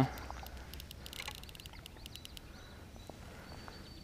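Quiet outdoor background by the river, with a few faint light clicks during the first half and a faint thin high note near the end.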